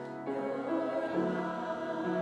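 Mixed church choir singing in long held notes, the chord changing about a quarter second in and again just after a second.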